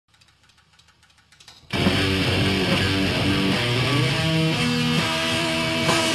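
Live rock band kicking in: after a near-silent start with a few faint clicks, electric guitars, bass and drums come in together at full volume a little under two seconds in and play a loud, driving riff.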